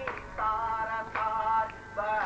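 Devotional music: a sung melody of held notes, each lasting about half a second before the next begins.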